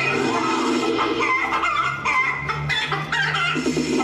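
Music with a sustained bass line, with short, quick-warbling high sounds over it.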